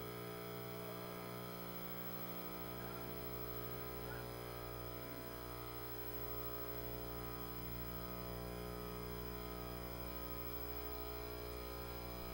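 Steady electrical mains hum with a faint buzz on the broadcast audio line, with no clear event over it.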